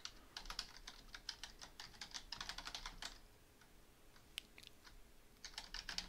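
Faint typing on a computer keyboard: quick runs of keystrokes for about three seconds, a pause of about a second broken by a single key, then more keystrokes near the end.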